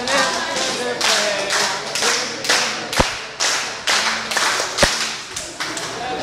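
A group clapping hands in a quick rhythm, about two claps a second, with voices calling in between. Two sharper, louder cracks stand out about three seconds and five seconds in.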